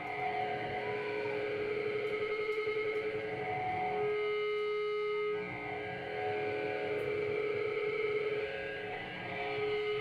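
Live rock band playing, with electric guitars through effects holding long, wavering sustained notes; the sound drops back briefly twice.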